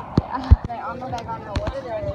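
Two heavy, low thumps about a third of a second apart near the start, the second the loudest, followed by people's voices talking.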